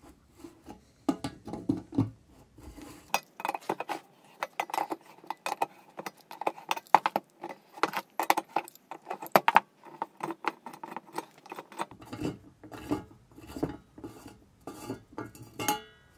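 Irregular metallic clicks, clinks and scraping of a steel adjustable wrench and the brass parts of a vintage Monitor No. 26 blowtorch being handled as the burner is worked loose and unscrewed from the tank.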